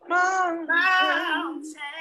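Solo gospel singing heard over a video call. A man holds two long notes, then a woman's voice takes over near the end with a wide vibrato.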